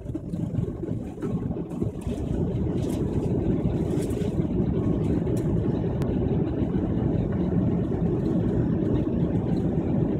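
Airliner cabin noise during the landing approach, heard from a window seat: a steady low rumble of jet engines and airflow, growing slightly louder over the first few seconds.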